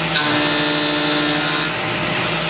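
Tormach PCNC 1100 CNC mill cutting 6061 aluminium with a 3/8-inch two-flute carbide end mill at about 2800 rpm on a 0.125-inch-deep profiling pass. A steady whine of several tones rides over a hiss, and the pitch steps up shortly after the start.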